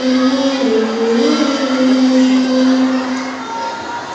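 A boy's voice chanting Quran recitation through a microphone and PA: long held melodic notes that bend up and down, ending about three and a half seconds in.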